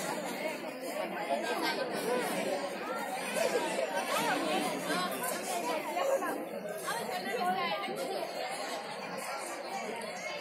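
Chatter of a crowd of schoolgirls talking at once: an even babble of many overlapping voices, with no single voice standing out.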